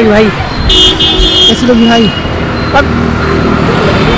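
Street traffic with a vehicle horn honking once for about a second, a little under a second in; people are talking over the traffic.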